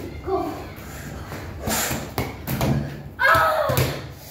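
A few thuds of a small ball bouncing on the floor, mixed with children's voices; near the end a child gives a loud, pitched shout.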